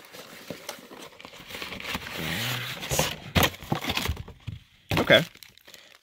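Thin clear plastic bag crinkling and rustling in the hand as it is handled, with a few sharper crackles.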